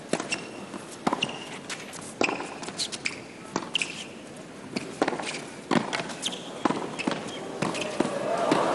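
Tennis rally: a tennis ball struck back and forth by racquets and bouncing on the court, a series of sharp pops about every half second to a second.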